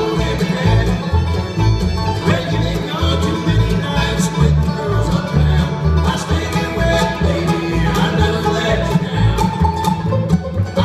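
Bluegrass band playing live without singing: banjo, mandolin, acoustic guitar and fiddle over an upright bass keeping a steady pulse.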